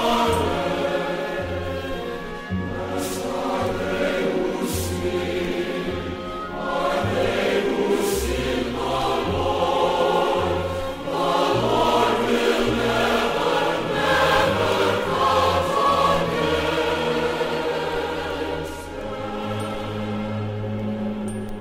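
Sacred choral music: a choir singing sustained chords over instrumental accompaniment, with a bass line that changes note every second or two.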